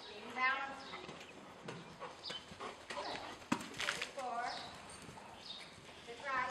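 Hoofbeats of a trotting horse on dirt arena footing, under an indistinct voice speaking.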